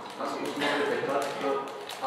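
Speech at a press conference, with light tapping or clicking sounds among the words.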